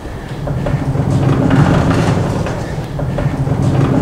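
A low rumble that swells up about a second in, eases, and swells again near the end.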